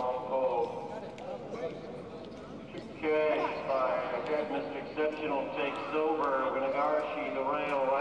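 Horse-race announcer calling a race in progress, the voice quieter at first, then louder and more excited from about three seconds in.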